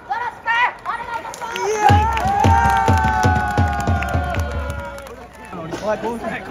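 Music over the stadium PA. After a voice in the first two seconds, a held chord sounds over a fast drumbeat of about four beats a second, its pitch sliding slightly down. It fades out about five seconds in.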